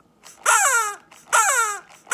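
Two long crow-like calls, each falling in pitch, about a second apart. They are the first two long beats ("ta, ta") of a rhythm given as the toucan puppet's voice.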